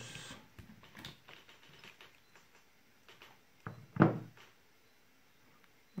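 Light handling clicks of multimeter test probes and loose 18650 cells being moved over a rubber work mat, then two short knocks a little under four seconds in, the second much the louder.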